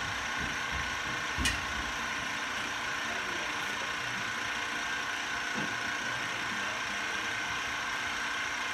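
TRS21 solvent recovery pump running steadily with a continuous hum, pushing butane through a closed-loop extraction column while the solvent starts to flow. A single short knock comes about one and a half seconds in.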